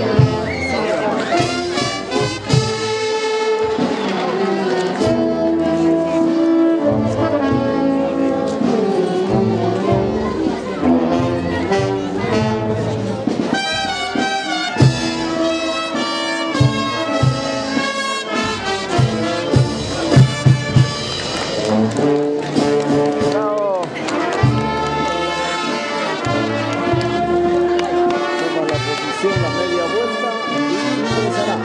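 A brass band of trumpets and trombones playing a festive tune, with a few sharp, loud hits a little past the middle.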